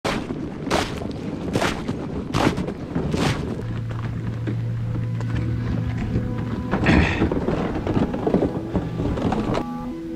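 Five heavy thuds at an even pace, a little under a second apart, then a low steady drone and a louder noisy swell, with music coming in near the end.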